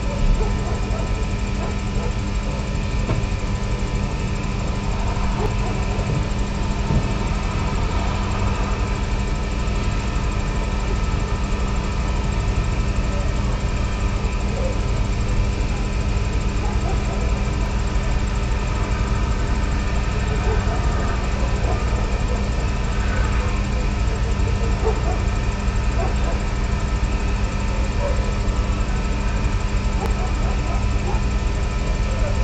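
Ambient drone piece: a dense low rumble under steady sustained tones held without change, with faint voice-like sounds from a mixed-in field recording.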